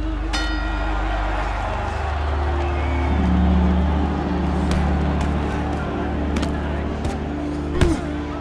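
Film score of long-held low notes. A ring bell sounds about half a second in, and a sharp punch impact lands near the end.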